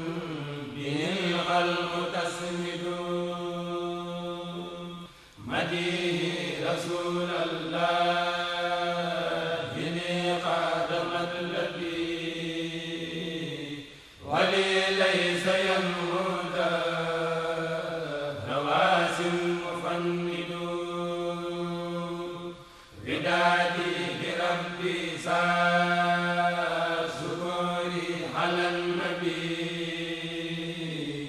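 A Mouride kourel, a group of male chanters, chanting an Arabic khassida together, the melody moving over a steady held low note. The chant breaks off briefly between long phrases, about 5, 14 and 23 seconds in.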